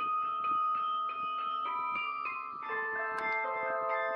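Carillon bells playing a melody, notes struck about three times a second, each ringing on under the next, with lower bells joining a little past halfway.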